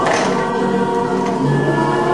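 Music with a group of voices singing long, held notes.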